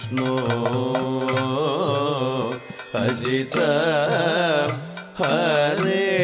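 A song: a singer's voice in wavering, ornamented phrases over a steady held drone, pausing briefly twice between phrases.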